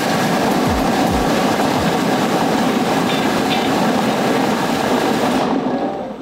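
Plastic lottery balls tumbling and clattering inside the spinning clear acrylic drums of a seven-drum lottery draw machine, a dense, continuous rattle that stops abruptly about five and a half seconds in as the drums halt and the balls settle.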